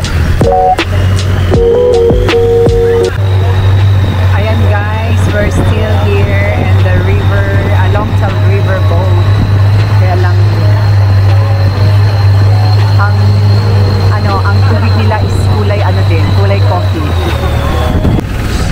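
Longtail boat's unmuffled engine running hard, a loud steady drone with a high whine that climbs over the first few seconds, holds, and drops away near the end as the boat slows.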